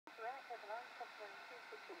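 A voice transmission received on a Realistic handheld scanner and played through its small built-in speaker. It sounds thin and narrow over a steady hiss.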